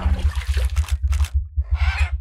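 Animated logo outro sound effects: a synthesizer note dies away in the first half-second, then three short, noisy swishes, over a steady, fluttering low rumble.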